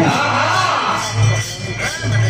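Woman singing a birha folk song into a microphone over live musical accompaniment. Her voice carries a long, gliding melodic line, with a steady low accompaniment underneath.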